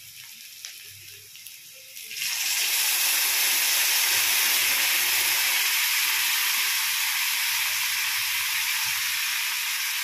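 Tamarind water poured into a hot pan of oil-fried spiced potatoes, hitting the hot oil with a loud, steady sizzle that starts suddenly about two seconds in. Before it, faint frying with a few light clicks.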